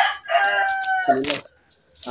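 A rooster crowing, ending in one long drawn-out note that falls slightly in pitch and stops about a second in.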